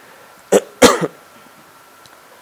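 A man coughs twice in quick succession, clearing his throat, about half a second in.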